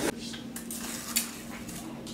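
A few sharp clicks of hard objects, the loudest a bright clink a little past a second in, over a steady low hum.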